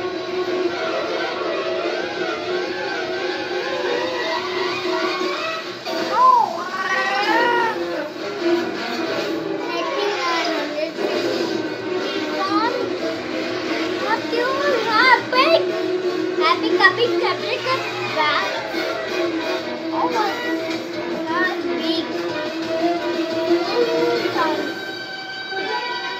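A cartoon soundtrack playing from a laptop: background music with steady held notes, over which animated characters give voice-like calls that glide up and down in pitch.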